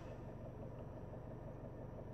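Faint steady low hum with light hiss inside a car cabin, without a change through the pause.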